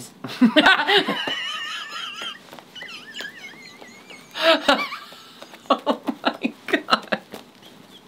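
A voice imitating fax-machine noises: high, wavering electronic-sounding squeals and warbles. Then laughter in short rhythmic bursts.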